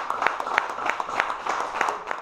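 A small audience applauding: a handful of people clapping, with single sharp claps standing out about three times a second.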